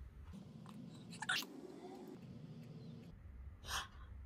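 A woman's short, sharp breaths, one about a second in and another near the end, over faint rustling of movement.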